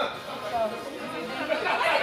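A group of girls talking over one another, getting louder about a second and a half in.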